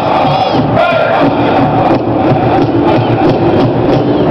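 Powwow drum group beating a large drum with a steady beat and singing a fancy shawl dance song in high voices. Crowd noise and short high calls that glide in pitch ride over the song.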